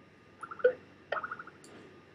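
Computer mouse clicking: a short cluster of quick clicks about half a second in, then a rapid run of clicks just over a second in.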